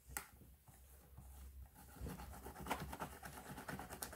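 Faint tapping and scratching of gloved fingers dabbing plaster dough into a thin plastic mould, with small clicks of the plastic. The taps come more often from about halfway through.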